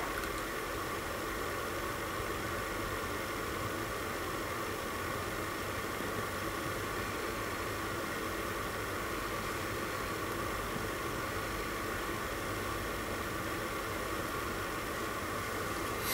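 Steady, even hiss of background noise with no distinct sounds in it.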